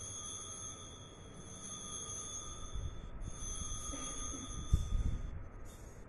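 Sanctus bell (altar bell) rung at the elevation of the consecrated host, straight after the words of institution. It rings steadily for about three seconds, pauses briefly, rings for about two seconds more, then gives one short last ring. A low thump sounds under it about three-quarters of the way through.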